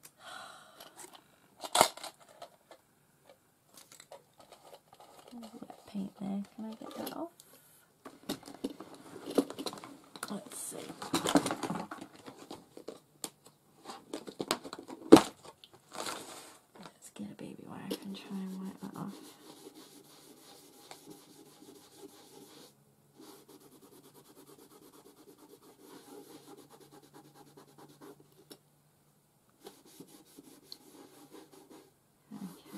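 Paper being handled on a craft table: irregular rustling and scraping with several sharp knocks, and two brief murmured voice sounds. It goes much quieter about two-thirds of the way in.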